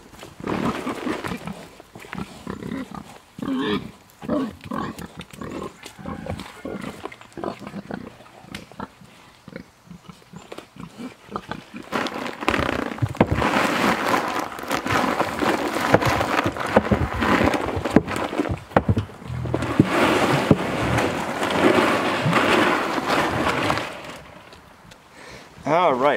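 Pigs grunting and eating grain at a feeder, with rubber boots squelching in mud. The feeding noise grows dense and steady about halfway through, then eases off near the end.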